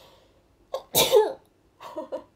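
A woman sneezing once, about a second in, with her hands held over her nose and mouth; a short catch of breath comes just before it and small breathy sounds follow near the end.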